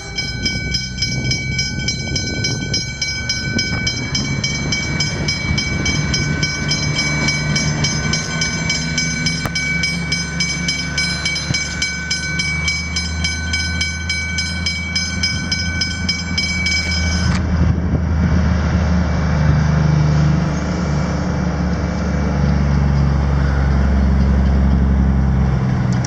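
Westinghouse hybrid level-crossing bells ringing rapidly, then cutting off suddenly about two-thirds of the way through, as the crossing clears. Under them is the low engine rumble of a passing rail track maintenance vehicle, loudest near the end.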